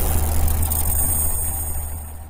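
Cinematic intro sound effect: a deep, steady rumble with faint high ringing tones above it, dying away towards the end.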